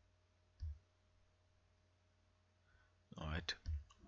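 A single sharp click with a dull thump about half a second in, against quiet room tone, typical of a computer mouse click picked up by a desk microphone. A man starts speaking near the end.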